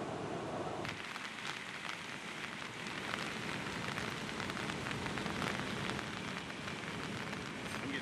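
Steady rushing hiss of water, dense with small crackling ticks and patter. It starts abruptly about a second in.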